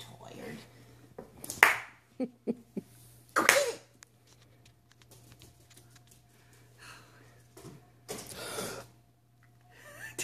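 A person's wordless, breathy sounds, a few short gasps or whispered breaths, with three quick soft taps between the first two.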